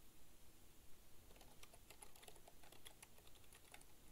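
Faint computer keyboard keystrokes: an irregular run of light key clicks as a password is typed at a sudo prompt.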